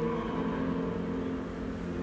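A steady low hum with a few faint sustained tones, no sudden sounds.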